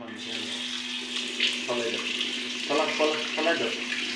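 Bathroom tap turned on and water running steadily into the sink, starting abruptly.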